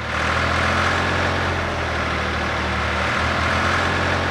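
Cartoon tractor's engine sound effect, running steadily at an even level.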